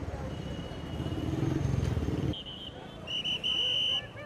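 Busy street noise of passing traffic and crowd voices. In the last second and a half a shrill whistle is blown in a few short blasts and then one longer blast.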